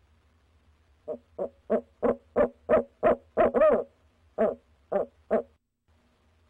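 Male barred owl hooting: a run of short hoots that quickens and grows louder from about a second in, then one longer wavering note, then three more spaced hoots.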